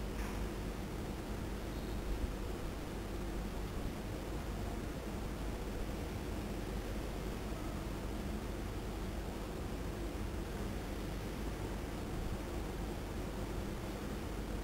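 Steady background hiss with a low hum and no distinct sound events: room tone while fine wires are twisted by hand.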